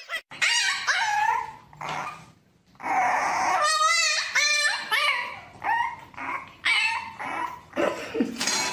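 French bulldog puppy whining and yapping in a run of short, high calls that bend up and down in pitch, with a longer wavering whine about four seconds in.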